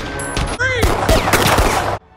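Film sound effect of loud, rapid pistol gunfire: many shots in quick succession with sweeping pitched sounds among them, cut off abruptly at the end.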